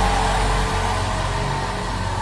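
Soft sustained background music: a low held chord over a steady rumble, easing slightly towards the end.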